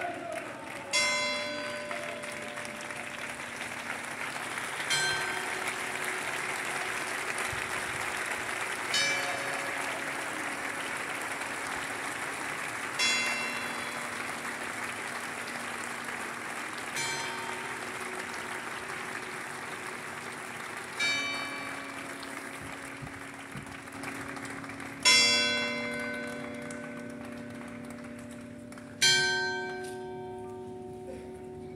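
A church bell tolling slowly for a funeral, one strike about every four seconds, each ringing on and dying away, the last two strikes the loudest. Under the bell, a crowd applauds steadily.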